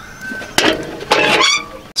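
A sharp metallic click from the socket wrench on the tractor's seat-mounting nut, about half a second in, followed by a chicken's high-pitched calls.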